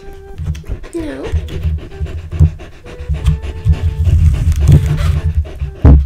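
A Samoyed panting fast and hard right at the microphone, over soft background music, with a sharp knock near the end.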